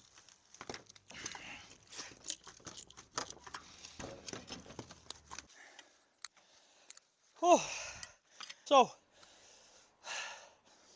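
Irregular small metallic clicks and scraping as a key is worked at the seized lock of a steel roller garage door, the lock jammed by years of dirt and water. Then a man's voice twice near the end.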